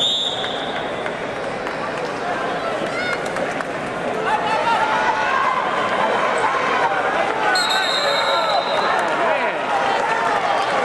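Referee's whistle blows briefly, then spectators shout and cheer more loudly from about four seconds in during a scramble on the mat. A second, longer blast of the whistle comes past the middle to stop the action.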